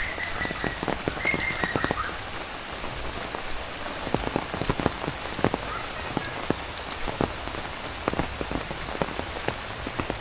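Steady heavy rainfall hissing, with large drops tapping sharply and irregularly close by.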